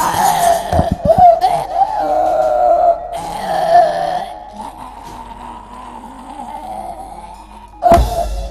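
Javanese gamelan accompaniment for a wayang kulit shadow-puppet battle scene. A long, wavering high wail is held over it for several seconds, then thins to a quieter steady tone. There are a few sharp knocks about a second in.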